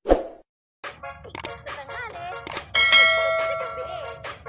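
Subscribe-button animation sound effects: a short swish, then clicks and chirps, and a bell ding about three seconds in that rings on and slowly fades.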